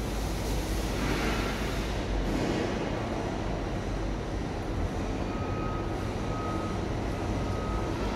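Steady low rumble and hiss of background machinery, with a faint thin high tone coming and going over the last few seconds.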